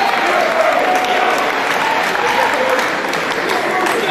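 Spectators applauding, with crowd voices mixed in.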